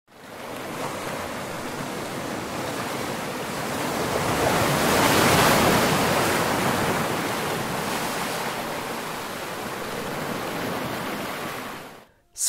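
Ocean waves and surf, a steady rush of water that swells to its loudest about five seconds in, then eases off and fades out near the end.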